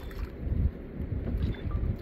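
Wind buffeting the microphone on an open boat, a low, uneven rumble that rises and falls in gusts.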